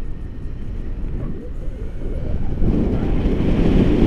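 Wind rushing over the camera's microphone during a tandem paraglider flight, a low rumbling buffet that grows louder for the last second or so.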